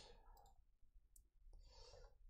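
Near silence with a few faint clicks of a computer mouse as a search suggestion is selected.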